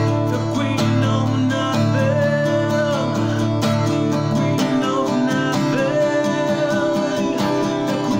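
A man singing while strumming an acoustic guitar in a steady rhythm.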